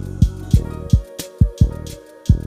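Lo-fi boom bap instrumental hip-hop beat: punchy kick drums and crisp snare hits in a steady pattern over held chords and bass.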